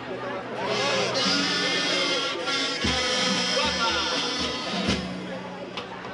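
A carnival murga starting a pasodoble: a buzzing carnival-kazoo melody over guitar, with a few bass-drum beats in the second half.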